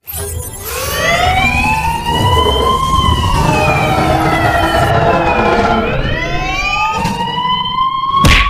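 A wailing siren sound effect over a low rumble, its pitch rising and falling slowly, then rising again near the end.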